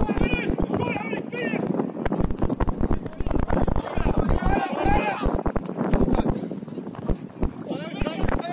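Shouting voices from players and spectators on an open football pitch, too far off to make out words, with irregular thumps on the microphone throughout.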